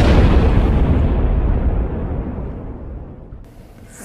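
Explosion sound effect: a loud blast whose rumble dies away over about three seconds, the high end fading first.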